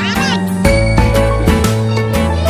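Donald Duck's squawky cartoon voice in a short wavering yawn over an orchestral cartoon score; after about half a second only the music goes on, with crisp struck notes.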